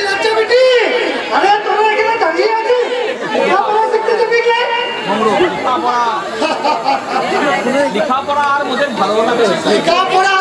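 Speech only: stage actors' voices in dialogue, several overlapping at times.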